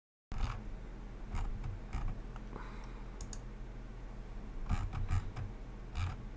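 Scattered light clicks from computer use at a desk, about six in all, over a steady low electrical hum. The sound cuts in suddenly out of dead silence just after the start.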